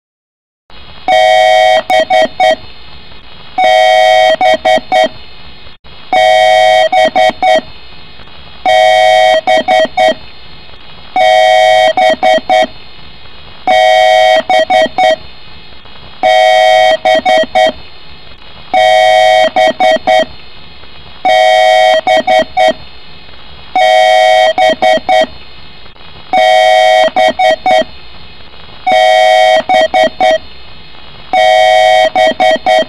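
Loud electronic beeping in a repeating pattern over a steady hum: a tone lasting about a second followed by a few short beeps, repeated about every two and a half seconds, starting about a second in.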